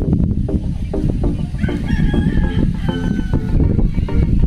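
A rooster crowing once, one long call starting about one and a half seconds in, over wind rumbling on the microphone.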